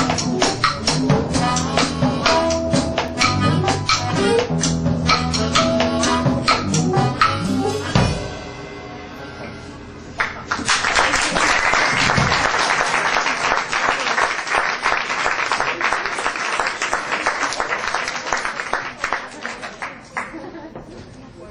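A live band with drum kit, guitars and harmonica plays the last bars of a song and stops on a final hit about eight seconds in, the last chord ringing away. After a short gap the audience applauds, and the applause slowly thins out.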